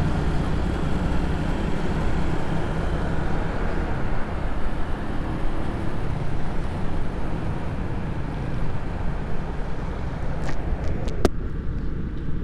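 Honda motorcycle ridden through city traffic: the engine's steady running drone under a rush of wind and road noise on the microphone. A couple of sharp clicks come near the end.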